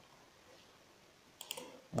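A few quick computer mouse clicks about a second and a half in, over quiet room tone.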